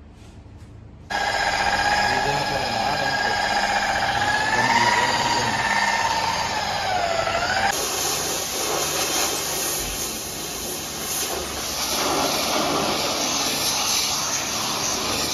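Pressure washer spraying water onto a car's body. It starts suddenly about a second in with a loud whine that wavers and dips in pitch. Past the middle it changes abruptly to a steady hiss of spray.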